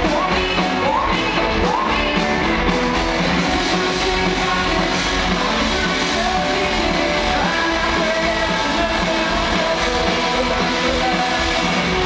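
Live rock band playing loud and steady, with a woman singing over strummed guitar and drums, recorded from within the audience.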